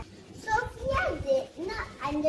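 A young girl speaking, her words unclear.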